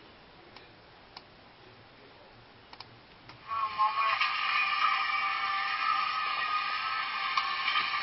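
A few soft clicks, then about three and a half seconds in, music starts playing from laptop speakers: thin and tinny, with no bass and several steady held notes.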